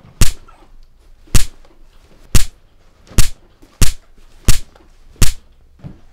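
Punches landing on a person pinned on a bed: seven sharp, loud hits, a second or less apart and coming a little faster toward the end.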